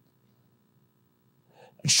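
A pause in a man's lecture: faint room tone with a low steady hum, a short faint breath about a second and a half in, then the sharp start of the spoken word "shut" near the end.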